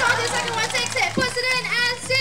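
Excited children's voices calling out and squealing, several at once, over a faint steady low hum.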